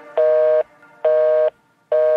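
A repeated electronic beep: three identical half-second tones about a second apart, with silence between them, in a gap between two songs of a pop mix.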